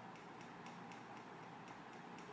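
Faint, regular ticking, several ticks a second, over low room hiss.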